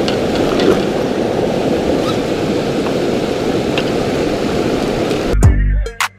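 Steady rush of a shallow river running over rocks, close by. About five seconds in, the water sound cuts off and music with a heavy bass beat starts abruptly.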